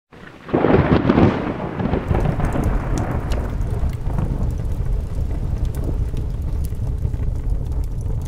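A thunderclap about half a second in, rumbling away over the next few seconds into a steady low rumble of rain.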